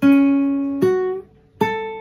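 Classical guitar played fingerstyle: three single notes plucked one after another, each ringing and fading and each higher than the last. They are the second string at the second fret, then the first string at the second and fifth frets.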